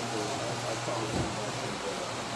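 Steady low background hum and hiss of room noise, with a faint voice in the background in the first half second.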